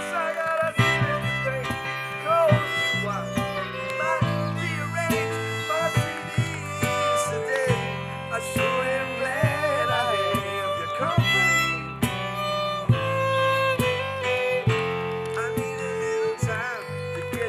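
A small acoustic band playing an instrumental passage together: strummed acoustic guitar, electric keyboard and fiddle, with gliding melody notes over sustained chords.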